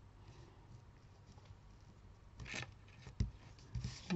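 Faint handling of glued patterned paper being pressed onto white card, with a soft paper rustle about two and a half seconds in, then two light taps near the end.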